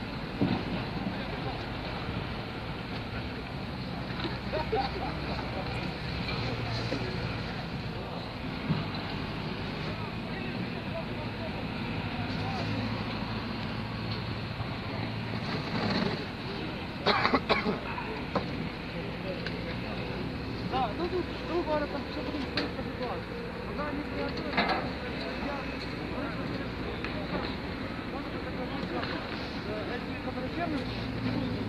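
A tractor engine runs steadily under scattered voices of people talking nearby. A few sharp knocks come through, the loudest cluster a little past halfway.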